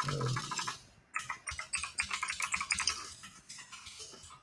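Typing on a computer keyboard: a quick run of key clicks, densest in the middle and thinning out near the end.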